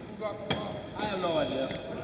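A basketball bounces on a hardwood gym floor: one sharp knock about half a second in, with a fainter one after it, under faint voices in the gym.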